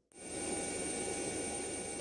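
Steady aircraft engine drone with a faint, steady high whine, rising out of a brief silence in the first half second and then holding level.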